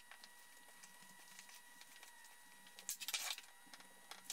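Wooden boards handled on a workbench during a glue-up: quiet small ticks and rustles, then a short cluster of knocks and clicks about three seconds in, over a faint steady high whine.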